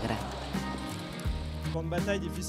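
Background music with a steady low bass, mixed with a hissing noise from a rally car driving on a dirt track that fades during the first second. The bass drops out briefly about a second in.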